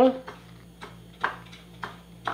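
Faint rustling and scuffing of hands rolling an egg-dipped dough ball through breadcrumbs in a glass bowl, three short scuffs spread over the second half.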